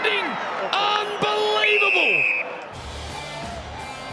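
Football broadcast sound: a commentator's drawn-out exclamations over the crowd as the kick curls in. About two and a half seconds in it cuts to quieter background music with a low pulsing beat.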